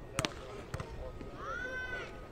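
Faint sharp pops of a volleyball being struck by hand during a rally, twice in the first second. A short, high-pitched call follows in the second half, rising and then holding.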